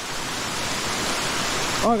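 Water rushing down a waterfall: a steady, even hiss.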